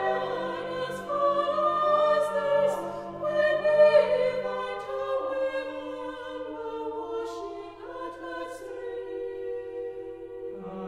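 Chamber choir singing slow, sustained chords, with sharp sibilant consonants cutting through. About halfway through the lower voices drop away and the sound grows quieter over a single held low note.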